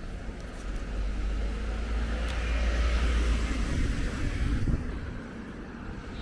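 A car passing on the street, its engine rumble and tyre noise swelling to a peak around the middle and falling away sharply near the end.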